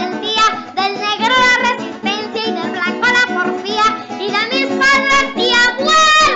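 A boy sings a Venezuelan folk pasaje into a microphone over instrumental accompaniment, holding long notes with vibrato.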